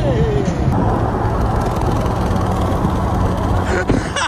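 Steady road and wind noise of a car cruising at motorway speed, with a low engine hum under it, close beside a truck. A single sharp click comes near the end.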